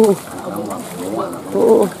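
A man's voice letting out two short, loud "uh" exclamations, each falling in pitch, one at the start and one near the end, over background chatter.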